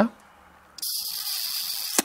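A steady, high hiss that starts about a second in and holds evenly for just over a second, then cuts off.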